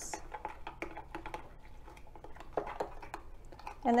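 Spoon stirring flour into water in a glass Pyrex measuring cup, mixing a flour slurry for thickening. It makes a run of light, irregular clinks and taps against the glass, several a second.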